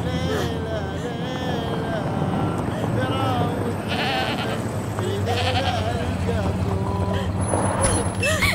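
Sheep bleating again and again, short wavering calls, over a steady low engine hum.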